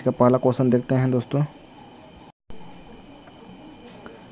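Insects chirping steadily in the background, a high, evenly pulsing trill. The audio cuts out completely for a moment about two seconds in.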